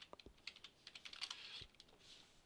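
Faint computer keyboard typing: a few scattered keystrokes as a password is entered.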